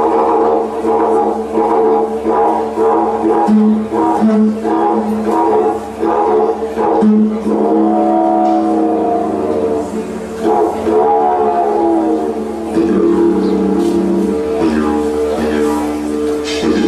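Wooden didgeridoo played solo: a continuous low drone pulsing about twice a second in the first half, with its overtones sweeping up and down in the middle as the player shapes the tone with mouth and voice.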